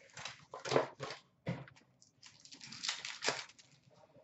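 Trading card pack wrapper being torn open and the cards handled: a run of irregular rustles and scrapes, loudest about one second in and again near three seconds.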